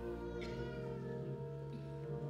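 Organ playing slow, sustained chords as Communion music, with the chord changing about one and a half seconds in. A brief higher gliding tone sounds about half a second in.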